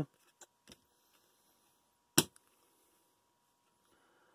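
Baseball trading cards being handled and shuffled by hand, with a couple of faint ticks early on and one short, sharp card snap about two seconds in.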